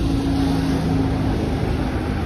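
Golf cart driving past with its motor giving a steady hum over a low rumble; the hum weakens a little toward the end.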